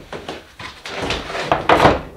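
A long aluminium track-saw guide rail, two DeWalt rails joined end to end, being flipped over and set down on a wooden board, scraping and knocking against the wood. It is loudest near the end.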